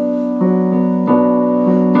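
Electronic keyboard in a piano voice playing held minor chords of the song's bridge, moving between B minor and F-sharp minor, with a new chord struck about half a second in, another at about a second, and another near the end.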